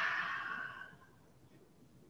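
A woman's long, forceful exhale through the mouth, emptying the lungs, fading out about a second in; then near silence.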